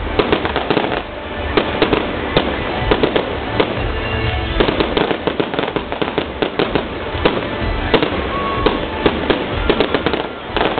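Aerial fireworks display: a rapid, irregular string of sharp bangs and pops from bursting shells, several a second, over a low rumbling boom.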